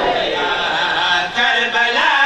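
Men's voices chanting a devotional lament together through a microphone and PA system, in a held, sung line without breaks.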